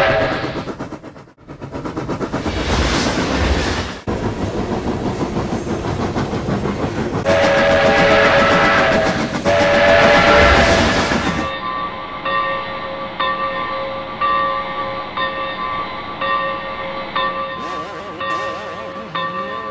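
Steam locomotive running, then two long blasts of a multi-chime steam whistle, each about two seconds long. After that, a locomotive bell ringing steadily, struck about every two-thirds of a second.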